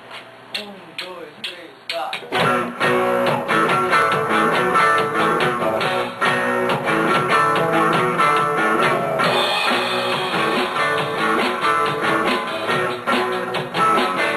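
Amateur rock band playing live in a small rehearsal room: a few separate strikes for about two seconds, then drum kit, bass, electric guitars and hand drums come in together and play on steadily.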